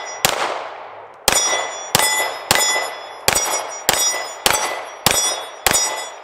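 Smith & Wesson M&P9 Compact 2.0 9mm pistol firing nine shots at a steady pace, nearly two a second after the first. Each shot is followed by the ring of a steel plate target being hit.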